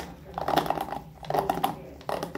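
Ball-tipped plastic bristles of a paddle hairbrush clicking rapidly as the brush is worked by hand on a hard countertop, in two strokes about a second apart.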